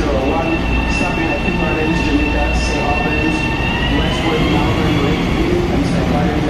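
Long Island Rail Road electric train moving along the platform: a low rumble under a high, two-note motor whine that holds steady, then climbs in pitch about four seconds in as the train gathers speed.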